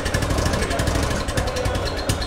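Royal Enfield Thunderbird 500's single-cylinder engine running at a steady idle, its exhaust giving an even, rapid pulse.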